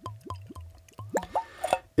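Reconstituted Jägermeister glugging out of the narrow neck of a glass bottle into a tasting glass: a quick run of bubbly plops, about four or five a second.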